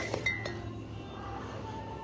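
Glass bottles in a cardboard carrier clinking together, with a short ringing chink about a quarter second in and a fainter one near the end.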